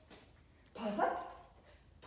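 A dog barks once, a short bark about a second in.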